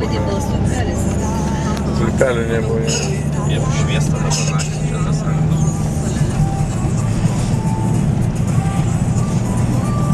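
Steady engine and road noise inside a moving car's cabin, with a continuous low drone from the engine and tyres at highway speed.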